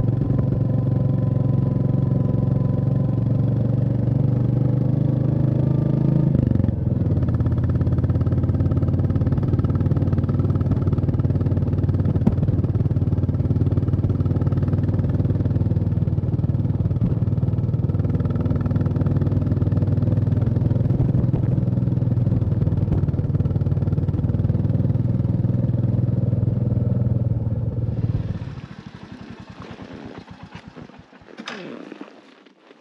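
Royal Enfield Classic 350's single-cylinder engine running steadily under way on a dirt track. Its pitch steps down about six seconds in, then holds even. Near the end it drops away sharply, leaving a much quieter hiss.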